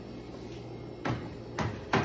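Items being handled in an open refrigerator, knocking against its shelves: three short knocks, about a second in, half a second later and near the end, over a steady low hum.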